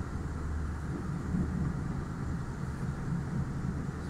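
Low, steady rumble of a passing vehicle.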